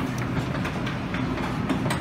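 Restaurant room noise: a steady low rumble with scattered light clicks and clinks, as of dishes and utensils at a buffet line.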